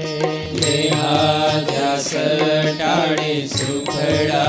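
Indian devotional music: a melody chanted over a steady drone, with instrumental accompaniment.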